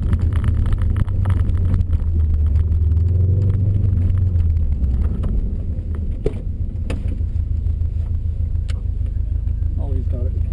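Subaru Impreza WRX STI's turbocharged flat-four running at low speed, heard inside the cabin; its low drone eases off about halfway through as the car slows. A few sharp clicks or knocks follow.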